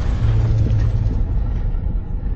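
Cinematic logo-intro sound effect: a deep rumble trailing on after a boom, its hissy top end fading away.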